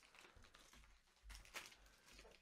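Faint crinkling and tearing of gift wrapping paper pulled open by hand: a few soft rustles, a little louder about one and a half seconds in, over otherwise near-silent room tone.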